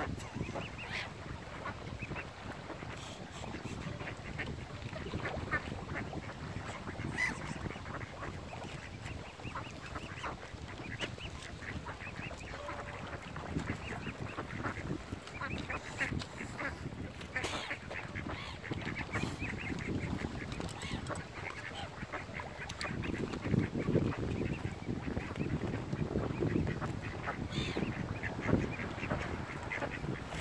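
Waterfowl calling: mallard ducks quacking and mute swans calling as they feed on bread. Close pecking and shuffling grow louder over the last several seconds as a swan feeds right beside the microphone.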